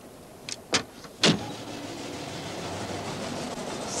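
Train carriage at a platform: three sharp knocks, the loudest just over a second in, then a steady rushing rumble that slowly grows louder as the train gets under way.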